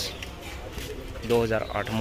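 A man's voice speaking a word about a second and a half in, over a steady low background hum.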